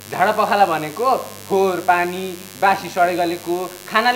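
A person talking over a steady low electrical hum in the recording.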